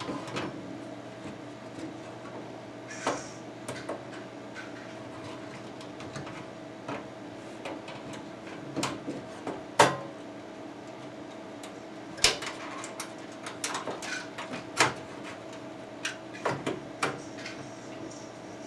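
A hard drive being slid and fitted into the metal drive bay of a steel PC case: scattered clicks, scrapes and knocks of metal on metal, sharpest about ten, twelve and fifteen seconds in, over a faint steady hum.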